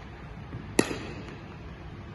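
Cricket bat striking a ball once, a sharp crack a little under a second in, echoing briefly around the indoor hall.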